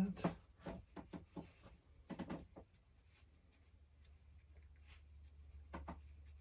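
Light clicks and taps from handling oil-painting brushes and palette, several in the first two and a half seconds and a couple more near the end, over a steady low hum.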